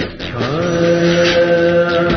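Film background music: a voice sings one long chanted note, sliding up into it about half a second in and holding it steady.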